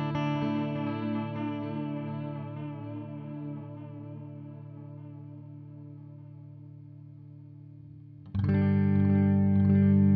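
Electric guitar (Fender Telecaster) through a Source Audio Collider pedal on its tape delay setting. A chord rings out and fades slowly over about eight seconds with a slight tape-style waver in pitch, then a new chord is struck, louder, near the end.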